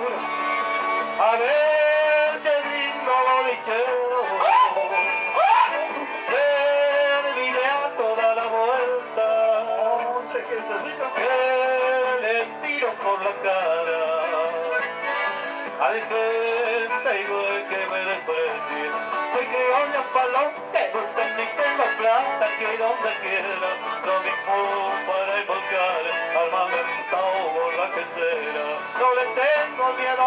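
Live chamamé dance music from a band, played loud and steady, with a busy melody line running up and down throughout.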